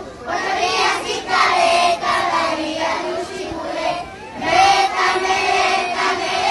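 A group of young children singing a Christmas carol together in Zapotec, in phrases broken by short pauses for breath.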